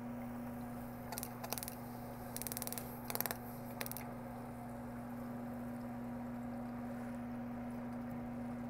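Small metal clicks and ticks from handling and fitting a tiny brass hydrogen-torch tip, a few scattered taps and a quick run of ticks in the first half, over a steady low hum.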